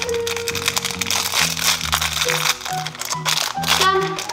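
A shiny plastic wrapper crinkling as it is torn open by hand, over background music.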